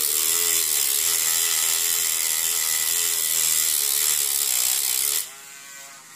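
Small handheld rotary tool grinding a slot into the head of a tiny Allen screw to turn it into a flat-head screw: a steady, loud grinding over the motor's whine. About five seconds in the grinding stops and the tool spins on more quietly.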